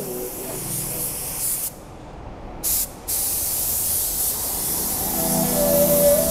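Compressed-air spray gun hissing steadily as it sprays filler primer onto a car body shell. About two seconds in the hiss stops for nearly a second, comes back in a short burst, stops again briefly, then carries on.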